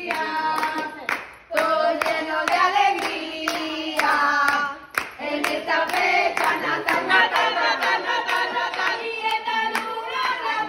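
A small group of people singing a birthday song together, with hands clapping steadily in time. The singing breaks off briefly twice, about a second and a half in and again about five seconds in.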